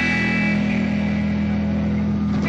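Live rock and roll band with electric guitar and bass holding one sustained chord that rings on steadily.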